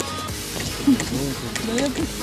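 A girl's voice speaking over background music.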